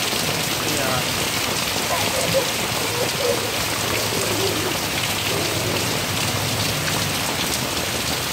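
Heavy rain falling steadily on a wooden deck, puddles and lawn, a constant hiss of drops.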